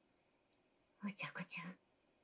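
A soft, whispery voice says a short line of anime dialogue, starting about a second in after a quiet moment.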